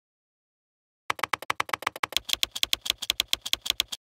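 Typing sound effect: a rapid, even run of keystroke clicks, about eight a second, starting about a second in and stopping abruptly.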